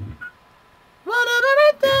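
A man singing alone, without accompaniment, in a high register. After a short pause the sung phrase begins about a second in, breaks briefly, and picks up again just before the end.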